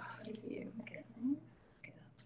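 Faint, murmured talk picked up by the meeting-room microphones, trailing off to near silence in the second half, over a steady low electrical hum.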